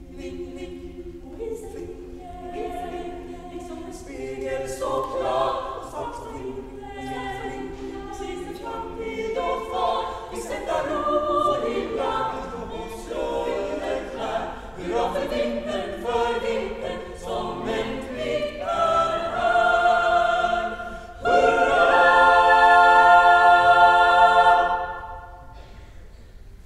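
Girls' choir singing unaccompanied in a Swedish Lucia service, the melody moving through changing notes before a loud, sustained final chord that cuts off about a second before the end.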